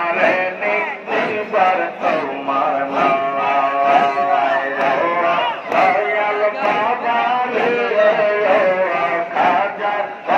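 Men singing a Sufi zikir, a devotional chant in Bengali, led by male voices with a group joining in. A steady beat comes about twice a second.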